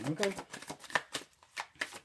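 A deck of tarot cards being shuffled by hand: a run of quick, irregular card slaps, several a second.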